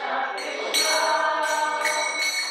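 Devotional group singing with small hand cymbals (karatalas) ringing, struck about once a second.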